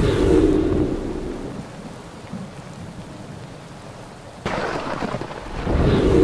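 Heavy rain pouring onto pavement, with thunder: a low rumble at the start fades over about a second and a half. The rain suddenly grows louder about four and a half seconds in, and another rumble rises near the end.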